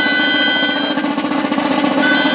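Riojan gaitas, double-reed shawms, hold a long shrill note over a snare drum roll. The gaitas break off about a second in, leaving the drum roll on its own.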